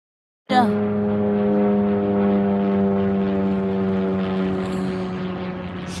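Small single-engine propeller plane flying overhead: a steady propeller drone that sinks slowly in pitch. The sound starts after a brief gap of silence at the very beginning.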